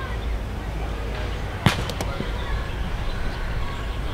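A roundnet ball struck once, a single sharp smack a little before the middle, with a fainter tick just after, over a steady low rumble of outdoor background noise.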